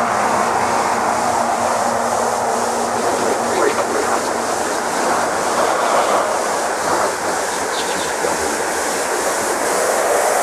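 Electronic dance music in a noisy breakdown: a dense wash of filtered noise fills the mix, with the filter sweeping down near the start and opening up again near the end.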